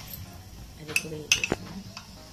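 A steel spoon clinking against the rim of an aluminium pressure cooker: a few sharp metallic taps in quick succession about a second in, knocking paste off the spoon into the pot.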